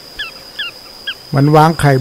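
Small Pratincole calling: a series of short, sharp, downward-slurred notes, about three a second, that stops about a second in. A steady high-pitched whine runs beneath.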